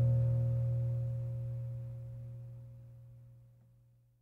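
The song's final guitar chord ringing out and fading away, dying out just before the end.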